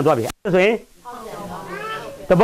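A man's voice speaking Burmese, with a drawn-out, rising intonation in the second half. The sound cuts out completely for an instant about a third of a second in.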